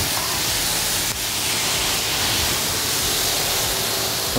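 Meat, peppers and onion sizzling on very hot cast-iron platters while a poured spirit burns over them in a flambé: a steady, even hiss.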